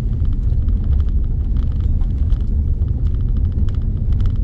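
A car driving slowly, heard from inside the cabin: a steady low rumble of engine and tyres on the road, with faint light clicks.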